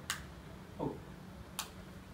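Faint sharp clicks from fingers working the buttons of a shirt: two clicks about a second and a half apart, with a brief low sound between them.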